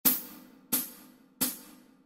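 Count-in of three evenly spaced hi-hat strikes, one per beat at 88 beats a minute, each fading quickly, ahead of a tenor saxophone play-along.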